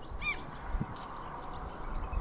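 A single short bird call about a quarter second in, rising and then falling in pitch, over a steady outdoor background hiss.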